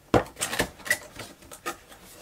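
Black cardboard headphone box being handled and its lid lifted open: a run of sharp clicks and light knocks of card against card, the loudest right at the start.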